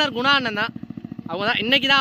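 A man talking in Tamil in two short phrases, with a brief pause between them.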